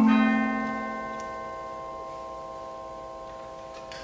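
A chord struck on mallet percussion at the start, then left to ring: several steady pitches sustain and slowly fade, the low notes dying away first.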